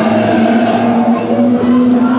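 The attraction's soundtrack playing loudly: sustained droning tones over a continuous rushing wash.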